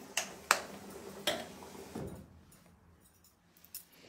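A few short, sharp bursts from a perfume bottle being handled and sprayed, the sharpest about half a second in, then quiet handling.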